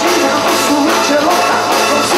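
A rock band playing live: electric guitar and drums under a sung vocal melody.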